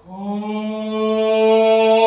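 A man's voice singing unaccompanied in a chant-like style: after a brief breath right at the start, a new note scoops up into pitch and is held as one long, steady tone.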